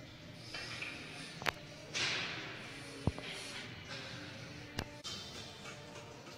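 Background music in a gym with repeated sharp breaths, about one a second, as a man presses a pair of dumbbells on a bench. Three short clicks, likely from the dumbbells, are heard during the set.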